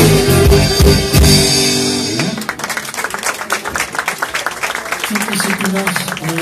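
A live rock band with electric guitars, bass and drum kit plays the last bars of a song, which ends about two seconds in. Audience applause follows, with a low steady hum coming in near the end.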